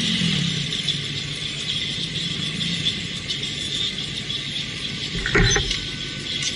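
Motorcycle engine running at low revs under road and wind noise, with a short rise in engine pitch at the start; a single knock about five seconds in.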